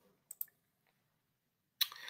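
Two faint short clicks close together, then near silence until a sharp click near the end, followed by a steady hiss.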